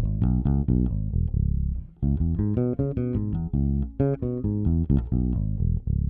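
Five-string electric bass playing a C-sharp minor seventh arpeggio over two octaves, one plucked note at a time. The notes start from the root on the low B string, climb to the top about two-thirds of the way in, and come back down.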